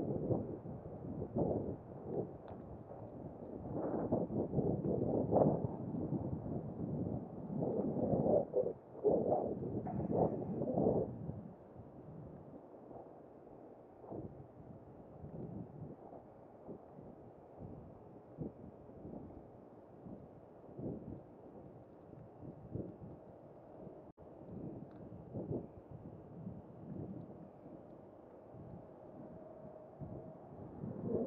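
Wind buffeting a body-worn camera's microphone, with muffled gusts for the first eleven seconds or so, then fainter.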